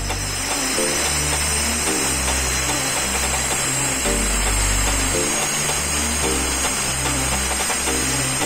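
Handheld angle grinder cutting a tile: a steady high whine with grinding noise, running without a break, under background music with a bass line.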